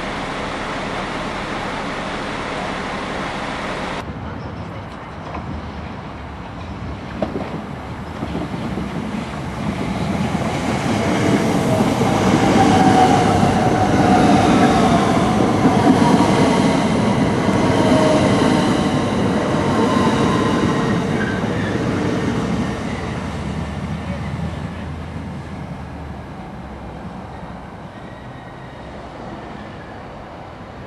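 A Southeastern Class 395 'Javelin' electric multiple unit running along the platform: the rumble of wheels and motors swells, peaks in the middle with a gliding whine, then fades away. The first four seconds hold the steady rumble of a passing works train, cut off abruptly.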